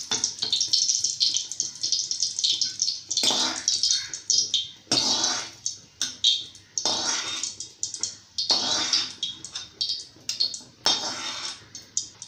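Small pieces sizzling as they fry in hot oil in a steel kadai, with a metal ladle stirring and scraping the pan in short, repeated swells.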